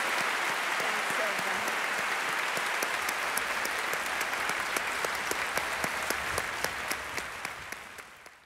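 Concert-hall audience applauding steadily, the clapping fading out near the end.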